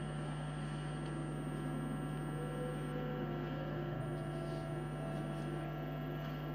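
Steady low electrical hum, even in level throughout, with no ball strikes or voices over it.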